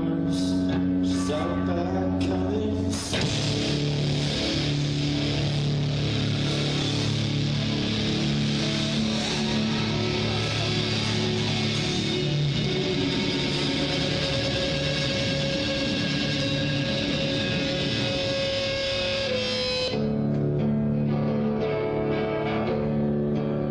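Live rock band playing: a guitar riff of sustained notes, then about three seconds in the full band comes in as a dense, thick wall of sound, dropping back to the sparser guitar part near the end.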